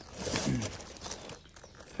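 A man clears his throat once, then a few faint crackles follow as the peeled vinyl decal and its backing film are handled.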